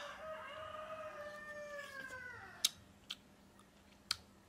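A rooster crowing once: one long call of about two and a half seconds that falls in pitch as it ends. A few sharp clicks of chewing follow near the end.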